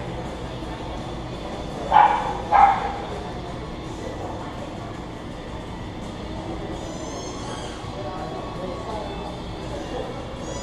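A dog barks twice in quick succession, a little over half a second apart, about two seconds in, over store background noise. Faint high squeaky chirps follow later.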